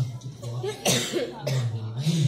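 A man talking into a microphone, with a short cough about a second in.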